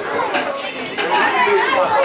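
Indistinct chatter of several people talking over one another close to the microphone.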